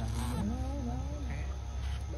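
Young macaque, wounded by a dog bite, whimpering: a string of wavering cries that rise and fall in pitch and fade out after about a second, over a steady low hum.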